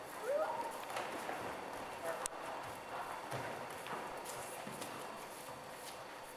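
Large gym hall ambience during a grappling bout: bare feet shuffling and slapping on the wooden floor, with indistinct distant voices, a short rising call near the start and a sharp click about two seconds in.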